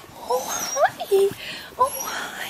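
Beagle whimpering in several short, rising whines, an excited greeting of its returning owner.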